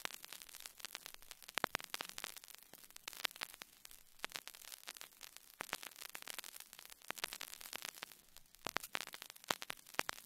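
Faint, irregular crackle and clicks of old-record surface noise from the start of a 1939 archival speech recording, before the voice comes in.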